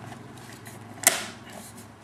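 One sharp plastic click about a second in, from the locking plate of a Zoll AutoPulse being pressed hard down over the Lifeband, with faint handling rustle around it. The Lifeband's skirts are tucked in, so it is being forced into place in an improper installation.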